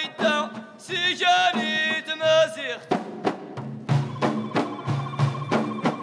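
Ahidous male chorus singing in unison. About three seconds in, the bendir frame drums come in with a steady beat of roughly three strikes a second under a held vocal tone.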